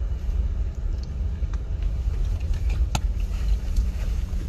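Steady low rumble of a car heard from inside the cabin, with one sharp click about three seconds in.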